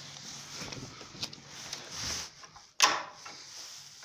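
Front door's rim night latch being worked: a faint click about a second in, then one sharp, loud click-knock near three seconds in.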